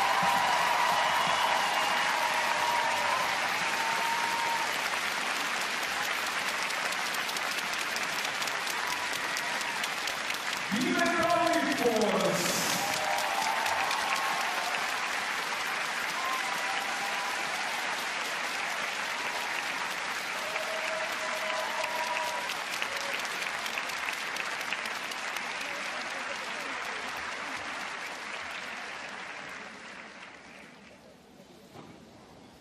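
Arena audience applauding a finished figure skating program, a dense steady clapping that fades away near the end.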